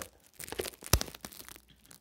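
A shipping package's packaging being handled and torn open: scattered crinkling and tearing, with one sharp snap about a second in.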